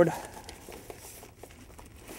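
Clear plastic bag crinkling faintly as it is handled and pulled over a board, in light irregular rustles.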